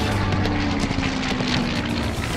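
Intro music layered with a loud low engine-like drone whose pitch slowly falls, with many short sharp crackles on top.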